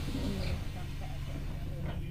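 Bus diesel engine idling steadily while the bus stands still. A brief low call sounds over it in the first half second, and a short click comes near the end.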